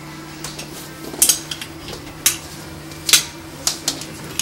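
A door being opened: several sharp metallic clicks and knocks from the knob and latch, the loudest a little past one second and just past three seconds in, over a steady low hum.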